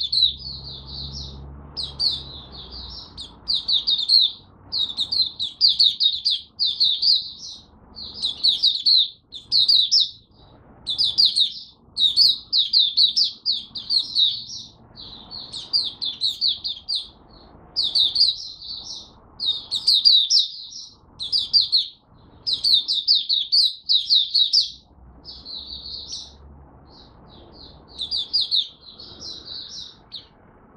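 Malaysian white-eye (mata puteh) singing in long runs of rapid, high twittering phrases, each under a second long, with brief gaps between them.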